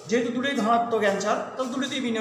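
Speech only: a man talking in Bengali, in a lecturing voice.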